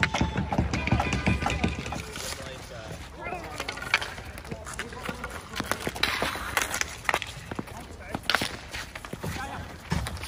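Ball hockey sticks clacking against the ball and the asphalt in scattered sharp hits, with players' voices calling out.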